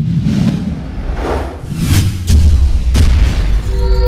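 Production-logo sting sound effect: rushing whooshes build up, then deep booming bass hits from about two seconds in, with music.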